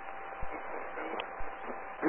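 Steady hiss of an open air traffic control radio channel, cut off sharply above the voice band, with a faint steady tone running through it. It is the keyed transmitter during a pause in a ground controller's transmission.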